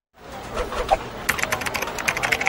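Computer keyboard typing sound effect: after a moment of silence a background noise fades in, then rapid, irregular key clicks begin about a second in.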